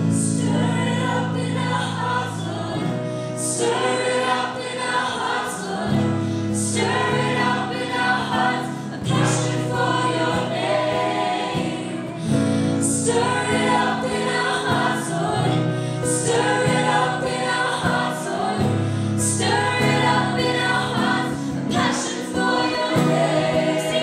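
A live worship band playing a song: women's voices singing the melody and harmony into microphones over electric and acoustic guitars, with a steady bass line changing chord every couple of seconds.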